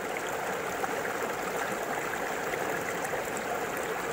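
Steady rush of a flowing stream, running water with no distinct events.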